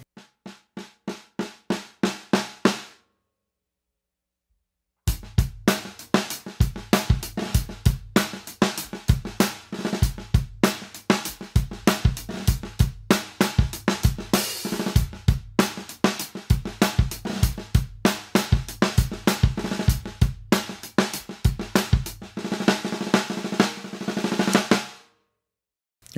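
Snare drum fitted with PureSound Super 30 wires, 30 strands of medium-gauge, tightly coiled steel. It first plays a run of single strokes that grow louder over about three seconds. After a short pause it plays a steady groove with bass drum and cymbals for about twenty seconds. The wires give a longer wash of snare buzz without sounding too rattly.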